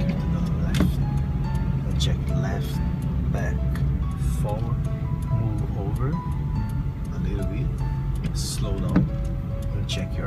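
Steady low drone of a Nissan car's engine and tyres heard inside the moving cabin, with background music and a voice over it.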